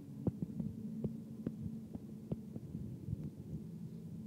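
A low, steady hum with a faint drone, broken by about a dozen irregular soft knocks and clicks.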